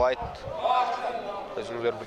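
A man's commentary voice speaking in bursts, with a low thump or two just after the start.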